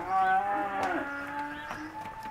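Black Angus cows mooing: one long, loud moo right at the start, overlapped by a second long moo that begins just before the first ends and carries on.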